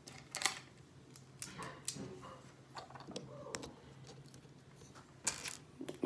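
Plastic Lego bricks clicking and rattling as pieces are handled and pressed together: a string of separate small clicks and knocks, the sharpest about half a second in and again near the end.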